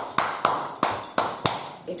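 Hand claps in a steady rhythm, about three sharp claps a second, demonstrating a rhythmic sound.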